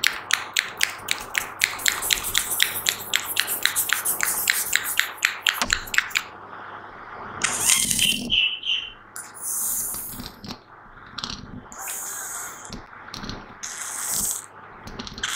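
Close-miked ASMR triggers: a fast, even run of sharp clicks, about five a second, for the first six seconds, then a short pause and irregular bursts of hissing and rustling right on the microphone.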